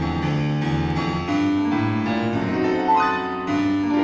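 Solo grand piano playing blues: chords and melody notes struck in a steady flow, with a bright high note standing out about three seconds in.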